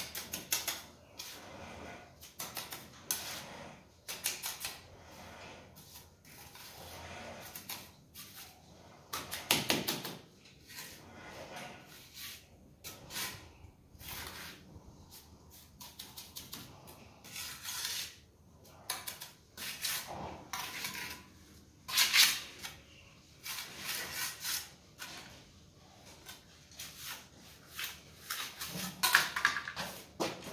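Mason's trowel scraping and tapping in wet cement screed mortar as it is packed over a steel wire mesh laid across a screed joint: irregular scrapes and knocks, with louder strokes about ten, twenty-two and twenty-nine seconds in.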